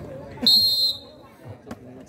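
Volleyball referee's whistle: one short, high-pitched blast about half a second in.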